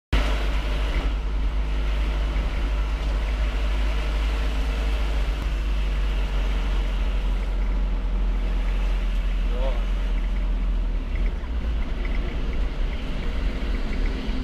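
Motorcycle engine running steadily while riding along a road, with heavy wind rumble on the microphone; the rumble eases slightly about eleven seconds in.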